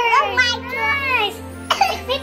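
A young child's excited high-pitched voice over steady background music, with a short cough about three-quarters of the way through.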